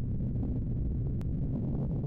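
Steady low rumble of a rocket-engine sound effect.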